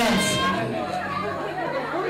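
People's voices and chatter in a large hall, with music low in the background; the sound drops in level about half a second in.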